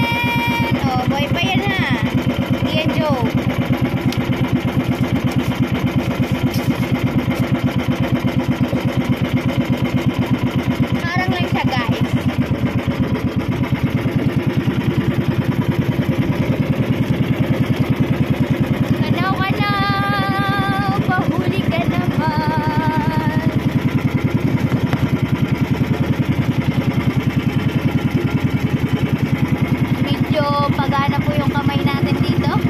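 Outrigger boat's engine running steadily underway, with an even, rapid pulsing beat.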